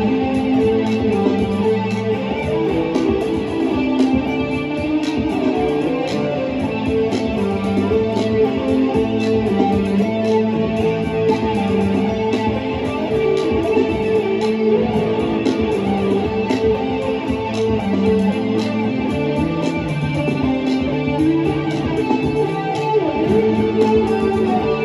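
Epiphone Riviera 12-string electric guitar played through a board of effects pedals in a psychedelic rock jam, over a looped bass line and a steady looped drum beat.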